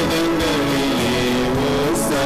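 Devotional music: a smooth melody that holds notes and glides between them over a sustained low accompaniment.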